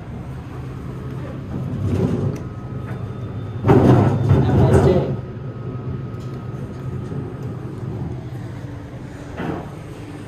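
Montgomery traction elevator cab running with a steady low hum, heard from inside the cab. A loud burst of voices comes in about four seconds in.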